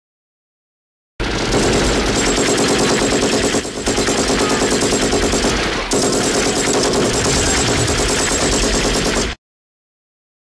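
A loud, fast, even rattle of repeated bangs, starting abruptly about a second in, with a brief dip and a break near the middle, and cutting off abruptly near the end.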